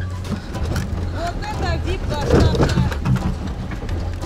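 A car towing a trailer loaded with wooden pallets and planks along a dirt track, its engine a steady low drone, with people's voices over it.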